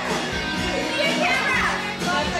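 Dance music with a steady beat playing loudly in a room, with people's voices and chatter over it.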